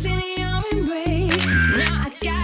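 Background pop song with a singer over a steady beat and bass line.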